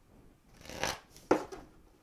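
A tarot deck being shuffled by hand. A short swelling rustle of cards comes just under a second in, then a sharper burst of cards about half a second later.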